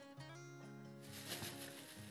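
Faint background music of soft, held chords.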